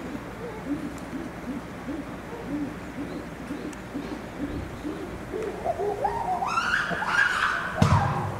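Chimpanzee pant-hoot: a steady series of low hoots, about two a second, that quicken and climb in pitch into loud high screams near the end. A single sharp thump just before the end is the loudest sound.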